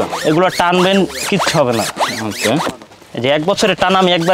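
Zipper on a fabric sofa foam cover being pulled along by hand, under a man talking.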